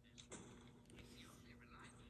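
Near silence, with faint, indistinct whisper-like voice sounds and a few light clicks.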